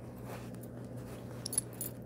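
Faint clicks of a metal reversible-belt buckle being turned and handled in the fingers, a few small ticks in the second half, over a low steady hum.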